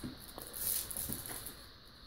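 Faint rustling of handling noise with a couple of light clicks, swelling slightly in the first half and then fading.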